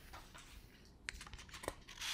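Faint handling sounds at a desk: a few scattered light clicks and taps with soft rustling, as printed sheets of paper are shifted and swapped.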